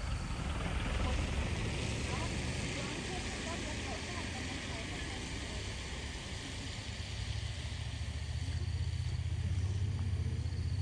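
A vehicle engine idling with a low steady hum that gets louder in the last few seconds.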